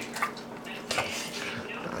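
An American pit bull terrier eating raw meat from a stainless steel bowl: chewing, with a few light clinks against the metal bowl.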